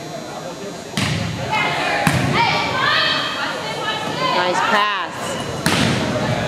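Volleyball rally in a gymnasium: sharp smacks of the ball being hit about a second in, again a second later, and once more near the end, each echoing briefly. Players and spectators shout between the hits.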